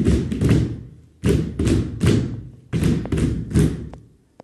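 Group of performers stamping bare feet on a stage floor in unison, heavy thuds in a repeating rhythm of three quick beats and a short pause.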